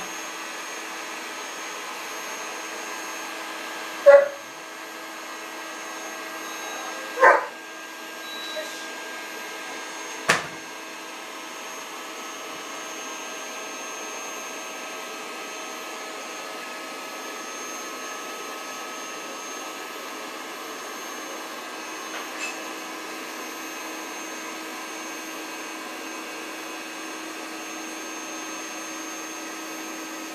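The EZ Bed's built-in electric air pump running steadily, drawing the air out as the mattress deflates and folds up on its frame. Three short loud sounds cut in about 4, 7 and 10 seconds in, the first the loudest.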